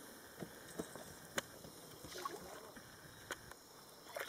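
Faint water sloshing with a few small, sharp splashes from a hooked Murray cod wallowing at the surface.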